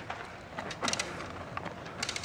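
A child's small BMX bike rolling over a dirt track: quiet tyre noise on the dirt, with a few light clicks a little under a second in.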